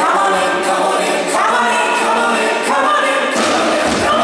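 Live rock concert sound of a female lead singer over layered choir-like backing voices, in sustained phrases with almost no bass or drums underneath. The low end comes back in near the end as the full band returns.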